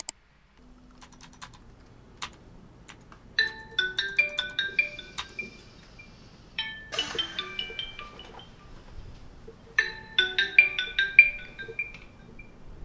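Mobile phone ringing with a marimba-style ringtone, its short melody of quick bright notes played three times, a few seconds apart. A few light clicks come before it.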